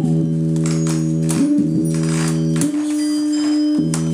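Homemade two-string analog guitar synthesizer sounding a sustained, organ-like low note. The note jumps to a higher held note for about a second near the end, then drops back.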